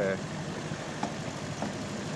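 25 hp Mercury outboard motor running steadily, pushing an aluminium fishing boat along.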